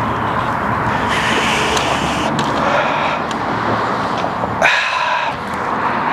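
Passing road traffic: a steady rushing of tyres and engine that fades about four and a half seconds in, followed by a brief high-pitched squeal.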